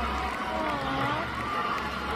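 A singing voice holding long notes that slide smoothly up and down in pitch, from a concert performance being played back.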